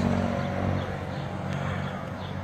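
A motor vehicle's engine running nearby, a steady low drone that slowly fades.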